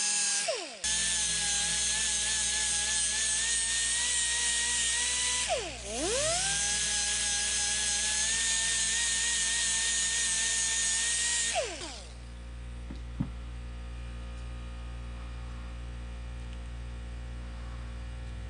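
Angle die grinder with a flap disc whining at high speed as it grinds down the edge of a clear plastic disc. The pitch drops and recovers twice, briefly near the start and again about six seconds in, then the grinder winds down and stops about twelve seconds in, leaving a low steady hum.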